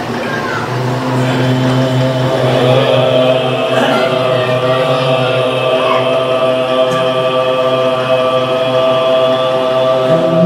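Several men's voices chanting a marsiya, an Urdu elegy, together into a microphone, holding one long steady note from about a second in.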